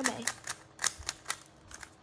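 Plastic clacks of a 3x3 Rubik's cube's top layer being turned by hand: a run of about half a dozen sharp, quick clicks.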